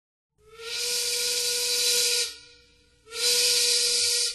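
A steam whistle blowing two blasts, each a steady tone with a loud hiss of steam. The first lasts nearly two seconds; the second starts about three seconds in.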